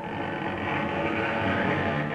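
Piano trio playing a contemporary piece: bowed strings hold a dense, steady, grainy cluster of sustained notes with a rough, noise-like edge.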